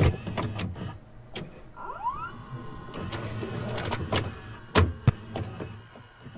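VCR tape-transport sound effect: a low steady hum with scattered clicks, a short rising motor whir about two seconds in, and two sharp mechanical clunks near the end.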